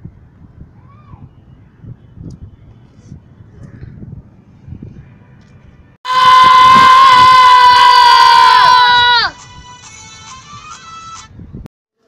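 Faint handling noise, then about six seconds in a very loud, steady pitched tone like a horn starts. It holds for about three seconds, slides down in pitch and drops away. A quieter, higher buzzing tone follows and cuts off suddenly.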